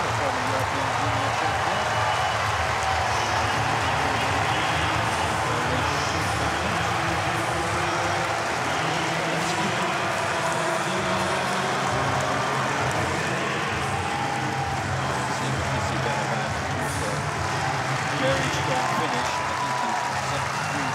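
Large stadium crowd: a steady din of many voices and cheering.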